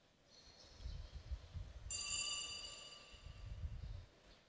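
A single metallic clink about two seconds in that rings on with several clear high tones and fades over about two seconds, amid low thumps and handling rumble.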